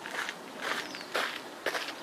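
Little grebe chick giving short, high calls, repeated about twice a second.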